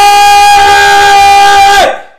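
A man's long, held scream of excitement at one steady high pitch, very loud and distorting. It breaks off near the end, just before he draws breath to scream again.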